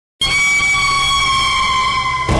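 A dramatic sound-effect sting from a TV serial's soundtrack: a loud, high held tone that starts abruptly and dips slightly in pitch near the end.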